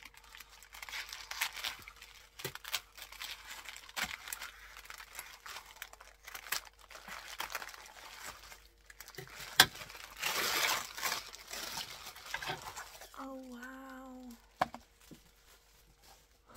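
Clear cellophane gift wrap crinkling and rustling as it is pulled and torn open by hand, with a sharp click about ten seconds in followed by a louder burst of tearing and rustling that lasts a couple of seconds.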